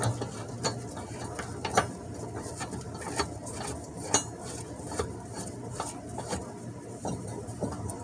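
A new mower blade being seated on its deck spindle and its bolt and washer turned by hand: irregular light metallic clinks and scrapes.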